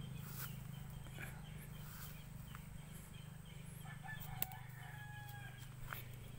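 A rooster crowing faintly over a steady low hum, with one sharp click about four and a half seconds in.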